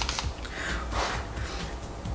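A person's soft breath, a breathy rush of air swelling about half a second in and fading by just past a second, over a steady low hum.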